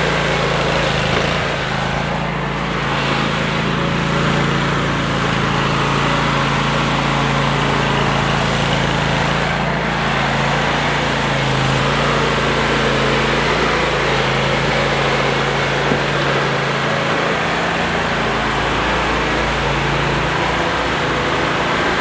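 Commercial lawn mower engine running steadily at a constant speed, its pitch and loudness holding even.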